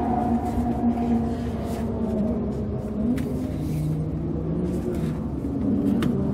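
Car engine idling, heard from inside the cabin: a steady hum whose pitch drifts slightly.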